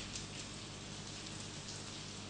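Steady background hiss with a faint low hum: the room and recording noise of a microphone in a pause between spoken sentences.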